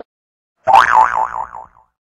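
A cartoon "boing" sound effect: one springy tone that wobbles up and down in pitch about four times, starting after a moment of silence and fading out before the end.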